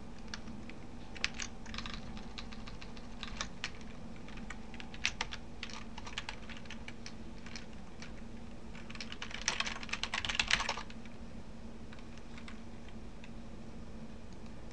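Typing on a computer keyboard: scattered single key presses, then a quick run of keystrokes about ten seconds in, over a low steady hum.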